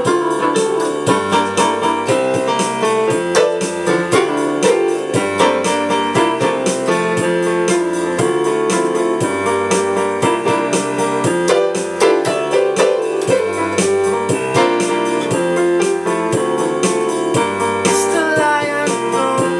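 Electronic keyboard played with a piano voice: chords struck in a steady rhythm over bass notes that change about once a second.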